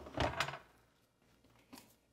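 A few quick knocks and a clatter in the first half second, then quiet with one faint tap near the end: a kitchen item being put away out of sight.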